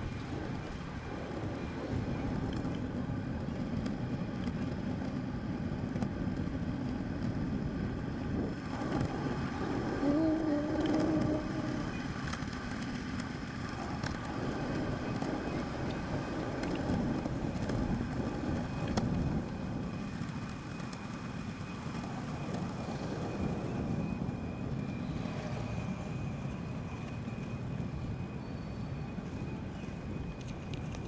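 Xootr kick scooter rolling on asphalt: a steady rolling noise from its small wheels, with a short pitched sound about ten seconds in.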